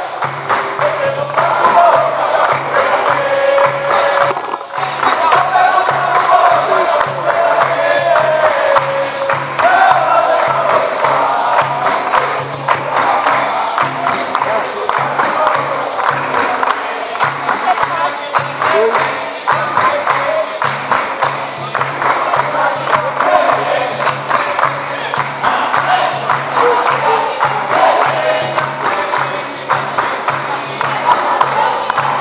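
Capoeira roda music: a group singing together over a steady beat of percussion with berimbau, pandeiro and atabaque, the circle clapping along.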